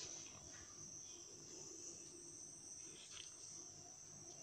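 Near silence: washed raw rice sliding from a plastic container into a cooking pot with a soft, faint rustle, under a steady faint high-pitched whine.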